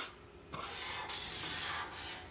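Felt-tip marker tip rubbing across a white drawing surface as lines of a circuit diagram are drawn: a steady scratchy hiss starting about half a second in.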